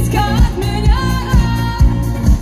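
Live pop band with a female lead singer, her voice over a steady, heavy beat of about two pulses a second.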